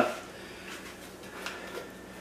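Quiet room tone in a pause in speech, with a few faint light clicks from a small glass spice jar and its plastic cap being handled.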